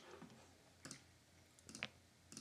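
Near silence with a few faint clicks of a computer mouse, one about a second in and a small cluster near the end.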